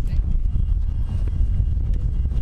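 Steady low rumble of wind buffeting the microphone, mixed with the steady noise of aircraft machinery running nearby and a faint high whine, under scattered indistinct voices.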